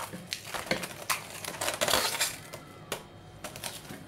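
Plastic cling film being pulled from its roll and stretched over a stainless steel bowl, crinkling and crackling irregularly, loudest about one and two seconds in.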